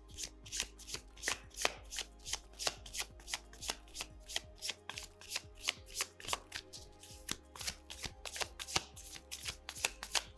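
A tarot deck being shuffled overhand, packets of cards slapping down from one hand into the other in a steady patter of about four clicks a second.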